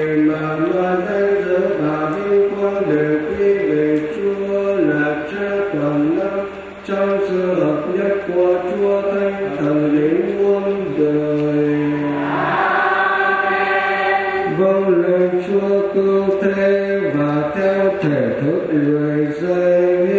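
Choir and congregation singing a slow liturgical chant at Mass, several voices holding long notes and stepping between pitches together.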